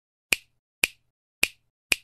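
Four finger-snap sound effects, sharp and short, about half a second apart, with silence between them: the sound track of an animated intro title.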